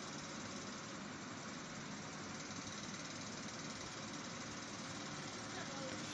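A steady, faint hiss of background noise with no distinct events.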